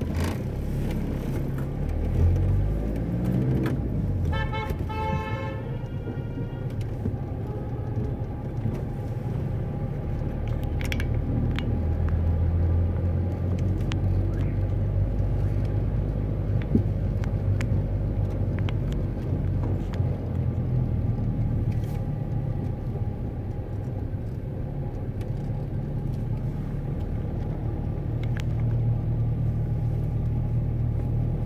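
Steady low rumble of a car driving slowly through city streets. About four seconds in, a horn sounds for about two seconds.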